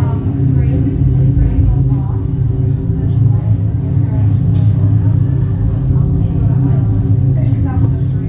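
Steady low rumble of a simulated space-elevator ride soundtrack, with indistinct voices faintly over it.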